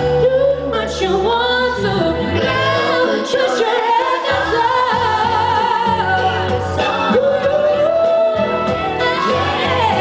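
A woman singing a pop ballad live into a handheld microphone over amplified backing music, with long held notes.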